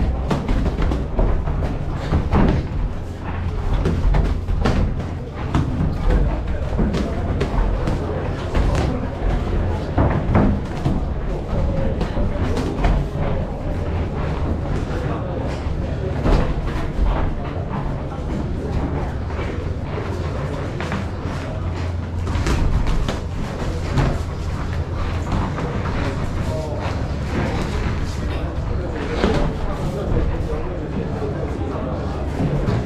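Boxing gloves thudding on bodies and guards in irregular flurries of punches, with voices shouting in the background.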